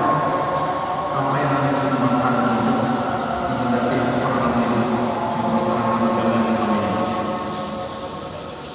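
A man chanting in long, held notes that slide slowly from pitch to pitch, melodic recitation rather than speech.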